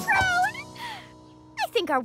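A short, high, gliding cartoon vocal call, followed by a held music chord that fades about a second and a half in.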